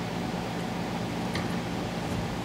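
Steady background hum and hiss of the room, with one faint click about one and a half seconds in.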